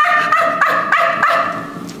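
A person making a repeated, gobble-like animal call with their voice, pulsing about three times a second on a steady pitch and fading out near the end. It is meant as a mating call.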